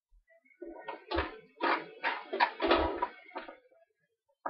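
Handling noises from a gloved hand working marinated chops in a plastic food tub: a run of knocks and rustles starting just under a second in, with two dull thumps, dying away near the end.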